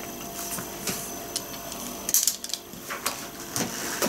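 Light clicks, rustles and small knocks of objects being handled and rummaged through by hand, with a busier flurry about two seconds in and another short one near the end.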